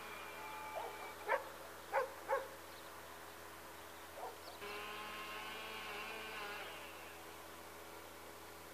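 Electric motor and propeller of a model airplane whining steadily in the distance. The whine fades out about a second in and comes back for about two seconds after the middle before fading again. A few short sharp sounds break in between and are the loudest things heard.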